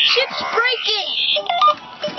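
Electronic sci-fi sound effects: several quick chirps that rise and fall in pitch, with a short run of stepped beeps about three-quarters of the way through.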